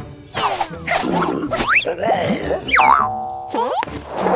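Cartoon sound effects over music: springy boings and quick rising and falling pitch glides, ending in a stepped run of falling tones near the end.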